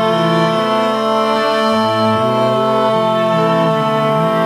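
String quartet playing a slow, sustained passage: one high note held steady while the lower parts change notes beneath it.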